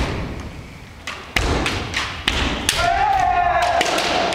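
Kendo sparring: sharp impacts of bamboo shinai strikes and bare-foot stamps on a wooden gym floor, the heaviest thud about a second and a half in. Near the end a fighter lets out one long kiai shout.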